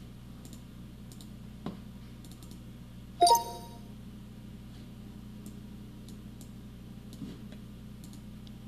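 Scattered faint computer mouse clicks over a low steady hum. About three seconds in comes a short two-note electronic chime that fades quickly: the voice-control software signalling it is ready after a restart.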